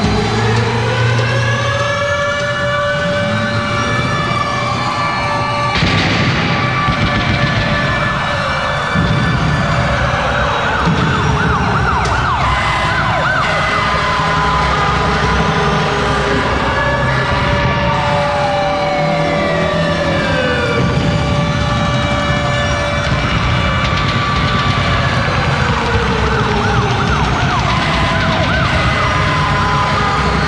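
Siren-like wailing in the intro of a live hard rock concert recording: several slow, overlapping rising and falling pitch glides over sustained droning tones, loud and continuous.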